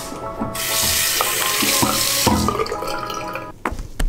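Water running from a bathroom sink tap for about two seconds, then shut off.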